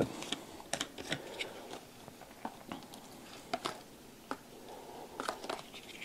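Light, scattered clicks and crinkles from a plastic isopropyl alcohol bottle being handled, its screw cap being twisted.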